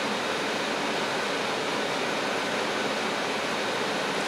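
Steady, even hiss of background noise, with no distinct pen strokes or other events standing out.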